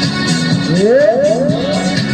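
Music played through a portable party speaker, with held chords and a run of four quick rising swoops one after another around the middle.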